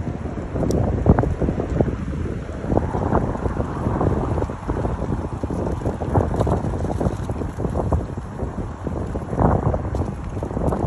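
Strong gusty wind blowing across the microphone: a loud, low buffeting that rises and falls irregularly with the gusts.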